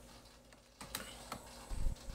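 A few sharp clicks from computer keys about a second in, then a low thump near the end, over a faint steady electrical hum.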